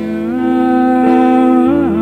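Slowcore band playing live: a long held sung note over sustained guitar chords, the note bending down and back up shortly before the end.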